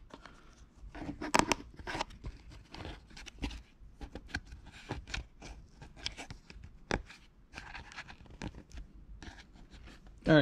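Push-on retaining clips being pressed down onto the plastic posts of a shift-boot trim panel: irregular small clicks, scrapes and creaks of plastic and leather being handled, with a few sharper clicks.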